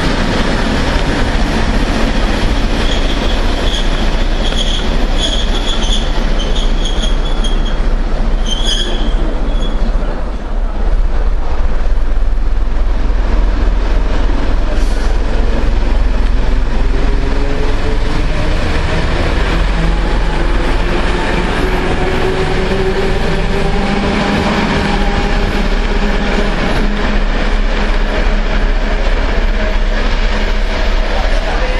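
Railway train running through a station: a continuous loud rumble, with high-pitched wheel squeal for the first nine seconds or so. In the second half, whines slowly rise in pitch over the rumble.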